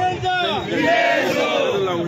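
A crowd of men shouting slogans together, loud overlapping voices chanting in unison.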